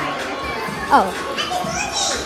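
Speech: a short falling "oh" about a second in, over a murmur of children's and adults' voices in a large hall.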